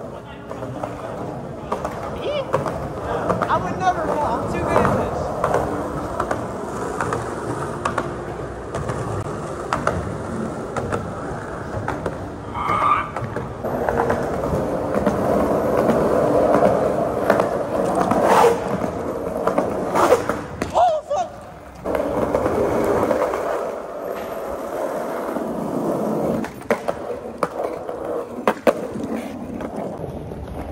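Skateboard wheels rolling over a concrete parking-garage deck: a continuous rolling rumble, with frequent clicks as the wheels cross cracks and joints.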